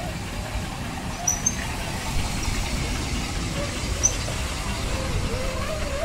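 Small amusement-park ride train running along its narrow-gauge track with a steady low rumble, a few short high chirps over it.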